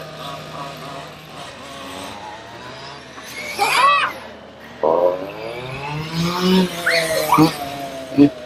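Motors of radio-controlled on-road cars whining, the pitch sweeping up and down as the cars accelerate and brake. The loudest sweep, rising then falling, comes about halfway through, and a whine drops in pitch about five seconds in.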